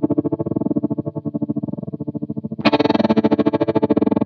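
Electric guitar chord held through a Lightfoot Labs Goatkeeper GK3 tremolo/step sequencer, its volume chopped into a fast rhythmic stutter. About two and a half seconds in, the sound suddenly turns brighter and fuller as the sequence steps change.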